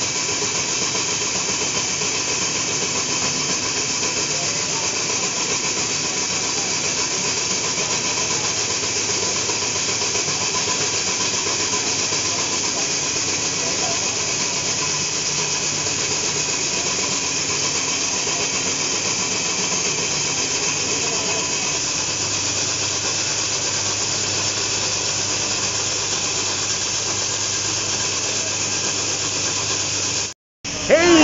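Stand-mounted diamond core drill running steadily under load, its core bit grinding through a 22.5 cm thick precast concrete wall in a continuous hissing drone. A low hum joins in about two-thirds of the way through.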